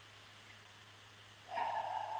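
A short audible breath drawn in through the nose or mouth, about a second and a half in, after a near-quiet pause with a faint steady hum.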